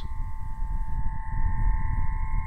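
Aeolian harp, a single string stretched over a pole and coupled to two buckets, sounding long steady tones at a few pitches at once as the wind blows across it, over a low rumble of wind on the microphone.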